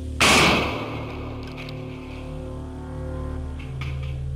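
Single blast of a 200 g black-powder test charge: a sharp bang just after the start that dies away over about a second. Background music with steady held tones runs underneath.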